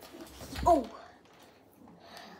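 A child's short exclamation, "Oh!", falling in pitch, together with a low bump about half a second in.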